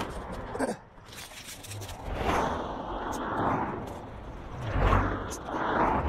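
Cars passing on a two-lane road: tyre and engine noise swells and fades twice, about two seconds in and again about five seconds in.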